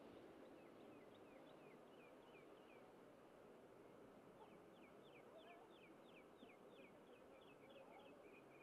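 Near silence: faint outdoor ambience with a bird calling, a quick series of short, high, downward-sliding chirps. The chirps come in two runs, the second starting about four seconds in and coming faster.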